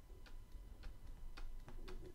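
Faint, evenly spaced clicks of a drawing stylus, about three a second, one for each small circle being drawn.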